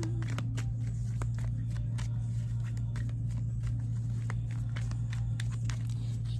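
A tarot deck shuffled by hand: scattered short clicks and slaps of the cards, over a steady low hum.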